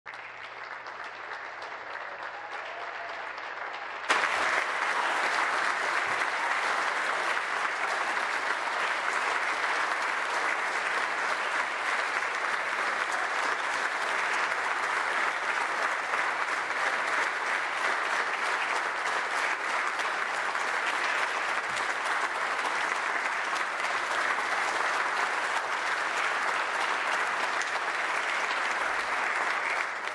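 Legislators applauding, a lighter clapping at first that grows suddenly louder about four seconds in and then holds as loud, sustained applause.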